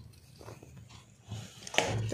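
A few faint handling knocks, with a sharper, louder knock near the end.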